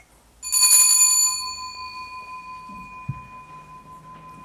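A single bell strike about half a second in, with a clear ringing tone that dies away slowly and is still sounding at the end. A soft low knock comes near three seconds.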